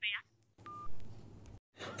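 A single short beep from a phone call to an automated helpline menu, coming right after the thin, clipped tail of a recorded voice prompt, followed by faint line hiss.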